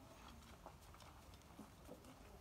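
Near silence, with a few faint scattered ticks.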